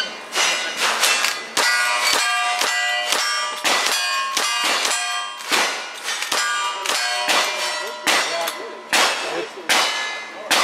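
Lever-action rifle fired in a rapid string of shots, about one every half second, with a short pause before the last few. Each shot is followed by the ringing clang of a steel target being hit.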